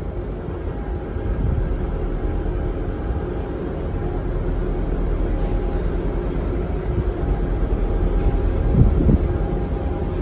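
TransPennine Express Class 397 electric multiple unit approaching: a steady low rumble with a faint steady hum, growing slowly louder.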